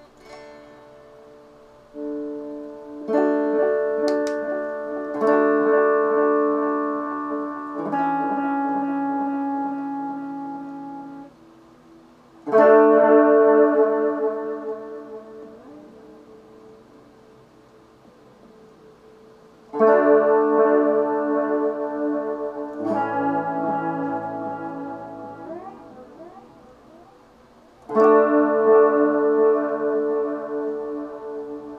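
Electric guitar with a Les Paul-style body playing slow chords through a Mooer Baby Water, a mini chorus and delay pedal made for acoustic guitar. Each chord is struck and left to ring and fade, about eight in all, with the loudest strikes near the middle, about two-thirds in and near the end.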